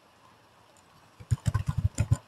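Near silence for the first second or so, then a quick run of computer keyboard keystrokes, several sharp clicks in under a second.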